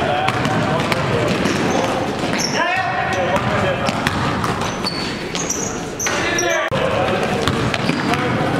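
Basketball being dribbled on a gym floor, repeated bounces, with indistinct players' voices in the background.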